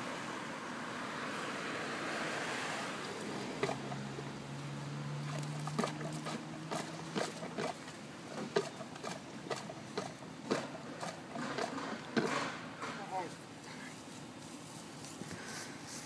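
A long PVC pipe being driven up and down in a sewer cleanout to plunge a blocked line, giving a run of irregular sharp knocks for most of the time. A low steady hum sounds for a few seconds in the middle.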